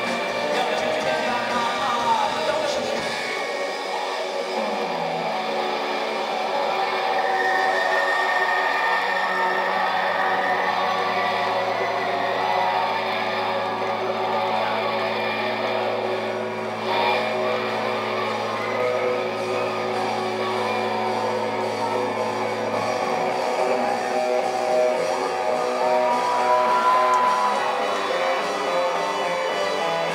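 Rock band playing live in a concert hall: electric guitar, keyboard and drums. A held low bass note sounds under the band from a few seconds in until about three quarters of the way through.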